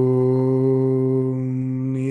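A man chanting one long, steady note to open a Sanskrit invocation. The open vowel closes to a hum a little past halfway.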